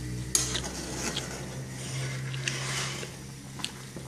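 A spoon stirring a metal pot of boiling soup, knocking against the pot about four times, over a steady low hum.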